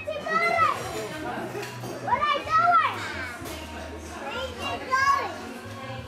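A child's high-pitched squeals, three of them, each rising and falling in pitch, the middle one the longest and loudest.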